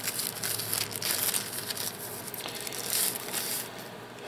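Thin clear plastic bag crinkling and crackling continuously as a power bank is worked out of it by hand.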